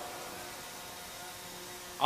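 Faint steady background hum with a few thin steady tones under an even hiss, in a pause between amplified speech.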